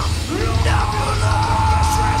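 Live heavy rock band playing loud: distorted electric guitar, bass and drums under a yelled vocal, with one long held note running from under a second in to the end.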